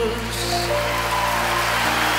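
Live band accompaniment holding a sustained chord over a steady bass between sung lines, with an even hiss-like wash of sound on top.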